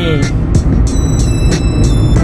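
Loud wind and road noise inside a car cabin at highway speed, a heavy steady rumble. Music plays over it, with high sustained notes in the second half.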